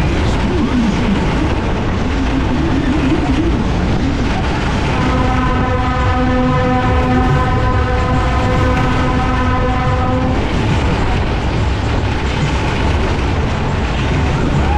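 Matterhorn fairground ride running at full speed, heard from a seat: a constant loud rush of wind and rumble from the cars on the track. From about five seconds in, a steady horn-like tone is held for about five seconds, then stops.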